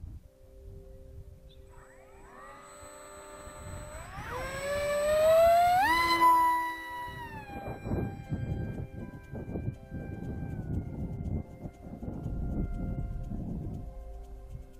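Electric motor of an RC Sukhoi SU-35 parkjet spooling up, its whine rising in pitch over a few seconds to full throttle, then settling into a steady higher whine as it flies, with gusts of wind buffeting the microphone.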